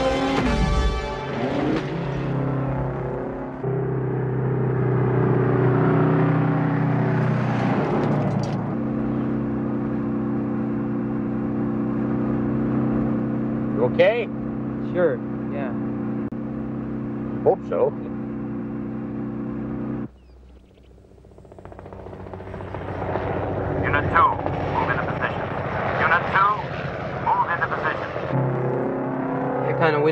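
Movie soundtrack of a truck chase: a heavy truck engine running steadily, mixed with music. A few short, sharp high sounds come between about fourteen and eighteen seconds in. About twenty seconds in the sound drops suddenly, then builds up again.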